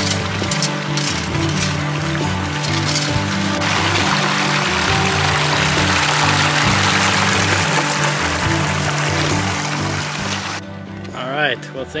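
Background music over water gushing from a discharge hose into a pond as it is refilled. The rush of water grows louder about four seconds in and cuts off abruptly shortly before the end, when a man starts to speak.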